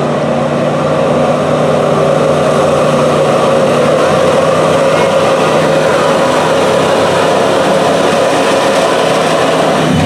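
Pickup truck engine held at high, steady revs under load while pulling a weight sled in a street-class truck pull.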